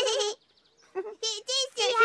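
High, childlike Teletubby voices babbling in short syllables with a wobbling pitch: one brief burst, a pause, then a quicker run of syllables in the second half.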